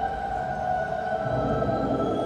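Eerie suspense-film background score: a sustained drone of several steady held tones over a low rumble.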